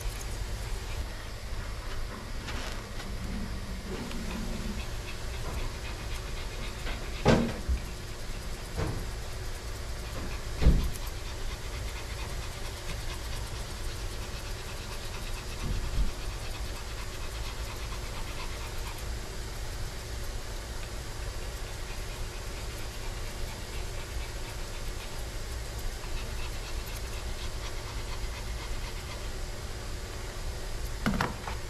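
A Pomeranian panting over a steady background hum, with a few sharp knocks, the loudest about seven and eleven seconds in.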